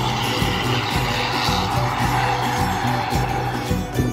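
Background music with a steady beat, over a coach bus passing close by: its road and engine noise swells to a peak about a second and a half in and fades away near the end.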